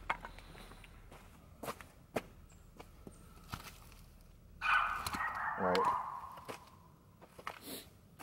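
Footsteps and small knocks on leaf litter and gravel. About five seconds in there is a louder voice-like sound lasting a second or so, with a short falling pitched cry inside it.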